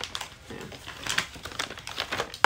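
Irregular light clicks and crinkles of things being handled.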